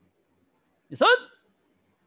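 Speech only: a man calls out one count in Korean, "daseot" (five), about a second in, loud and rising in pitch, as a taekwondo stretch-hold count.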